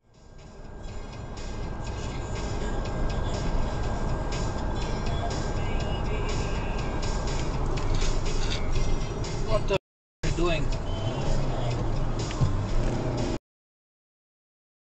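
Steady road and engine noise inside a car moving at motorway speed, with music and voices mixed in underneath. It fades in at the start, drops out for a moment about ten seconds in, and cuts off shortly before the end.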